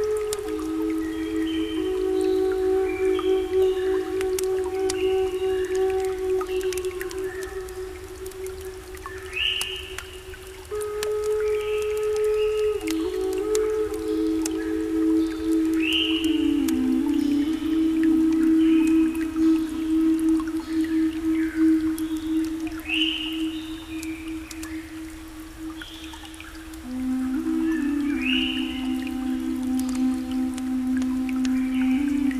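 Slow ambient new-age music: long held low synth notes that shift pitch every few seconds. Over them, short high sliding tones recur about every three seconds, with scattered faint clicks. The music softens briefly twice, about a third of the way in and again towards the end.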